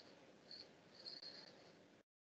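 Near silence: faint room hiss with a few faint, short high-pitched chirps, one about half a second in and a quick run of them around one to one and a half seconds.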